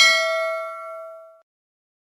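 A single bell-chime 'ding' sound effect for the clicked notification-bell icon, ringing with several clear tones and fading away after about a second and a half.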